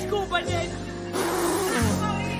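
Background music with a woman's short, rough cry of dismay about halfway through, falling in pitch as it ends.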